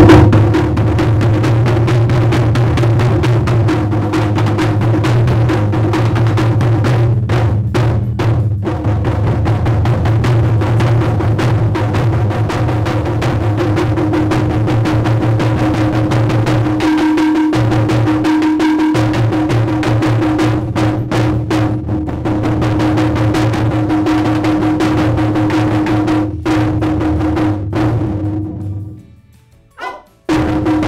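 Japanese taiko drums played by an ensemble: two large barrel drums and a smaller drum struck with sticks in a fast, driving rhythm with deep, booming low strokes. Near the end the playing stops for about a second, then starts again.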